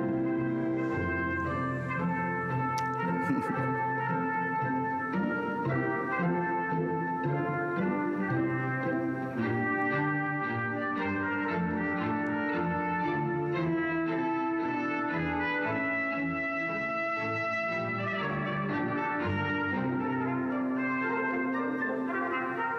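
Orchestral classical music with prominent brass, played from a CD on a Bose Wave Music System IV and heard through studio microphones.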